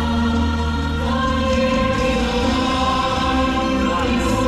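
Choral music: a choir singing long held notes that change about every second.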